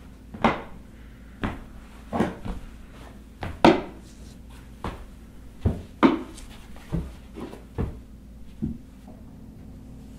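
A wooden walking cane knocking on the floor together with heavy footsteps: about a dozen sharp knocks and thuds, irregularly spaced at one or two a second.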